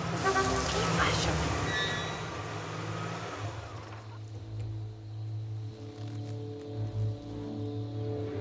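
Jeep Wrangler engines and tyres rolling over grass as the vehicles slow to a stop. After about three and a half seconds the vehicle noise fades and soft orchestral music with low held notes takes over.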